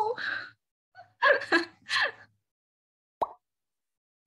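A woman's voice in short stretches of talk and laughter, then one short pop with a brief rising tone about three seconds in.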